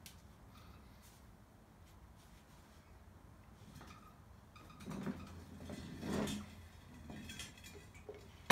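Faint room tone at first. From about five seconds in, a few dull scraping and knocking handling noises as the cylinder mower is swung round on a concrete floor.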